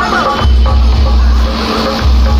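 Bass-heavy DJ music played loud through a large stacked-speaker sound system, with long, deep bass notes that come in about half a second in and hold over a wavering melody.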